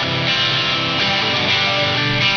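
A rock band playing live, loud electric guitar chords held and ringing steadily.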